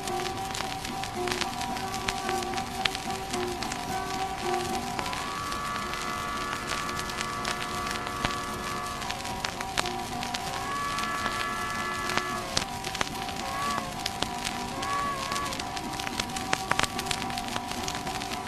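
Instrumental passage from a 1924 78 rpm shellac record: held harmonica chords with guitar underneath, the chords shifting about five and ten seconds in. Dense surface crackle and hiss from the old disc run through it.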